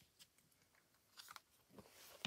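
Near silence: room tone, with a few faint clicks from about a second in.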